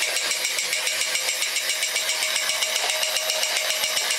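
Battery-operated Mr. Astronaut toy robot walking: its small electric motor and gear train running steadily, with a rapid, even ticking from its clicker noise mechanism.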